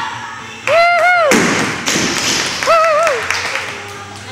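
Onlookers cheering a completed lift with high, drawn-out wordless shouts: two whoops about two seconds apart, with a burst of rushing noise between them.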